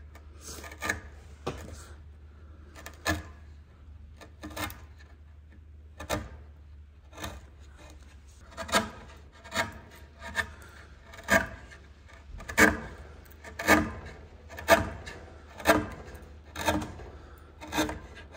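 Hand-pushed bench chisel paring a hardwood shoulder down to a knife line, short scraping cuts, a few scattered at first and then about one a second through the second half.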